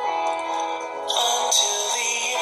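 A love song: a man's singing voice over backing music, the sung notes held and changing, with a brighter passage from about a second in.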